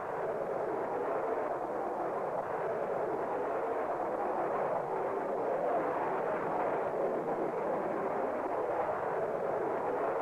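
Steady jet engine noise from F-4 Phantoms in flight, a continuous rushing sound with no distinct tones or breaks.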